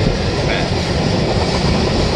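Freight train of tank cars rolling past close by: a steady, loud rumble of steel wheels on rail.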